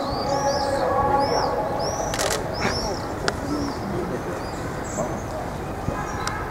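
Small birds chirping over and over in short, arched calls, over a background of people talking. Two brief, sharp clicks in the middle.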